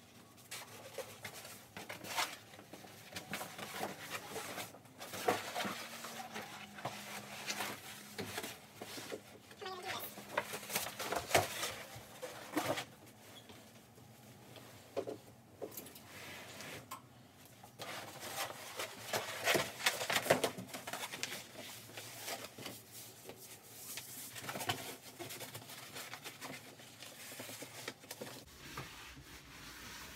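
A mattress being hauled off a metal bed frame and tipped on its side: irregular rustling of the fabric cover and bedding, with scattered knocks and bumps.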